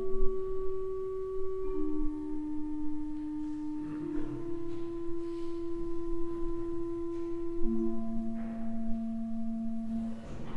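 Church pipe organ playing soft, pure-toned sustained chords, the held notes changing slowly one or two at a time.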